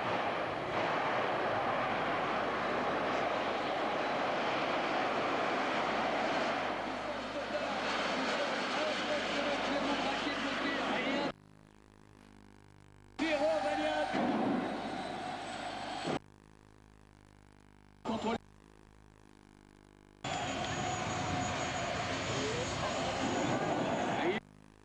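Engine of a small racing vehicle running loudly and steadily on the track. The sound cuts off abruptly about eleven seconds in and comes back only in short stretches, one with a wavering, rising whine.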